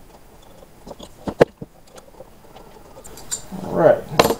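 A few light metal clicks and taps as a cutting bit is handled and swapped in a desktop CNC router's spindle collet, the sharpest pair about a second and a half in. A short vocal sound comes just before the end.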